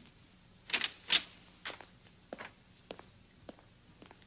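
Footsteps of a woman walking, about six steps roughly half a second apart, the first two loudest.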